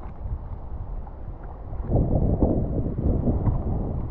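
Wind buffeting the action camera's microphone: a low, rough rumble that gets louder about two seconds in, then eases a little.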